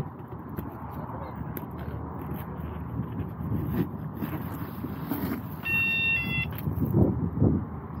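Boat security alarm giving a brief electronic chime, a few stepped beeps, about six seconds in: it is set to its welcome chime rather than a siren, and the chime shows that the newly moved alarm works. Low rumble and handling noise run under it.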